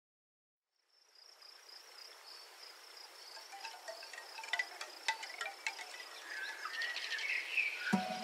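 Wind chimes tinkling over a steady high insect trill, the nature-sound intro of a lo-fi hip hop track. It fades in from silence about a second in and grows steadily louder.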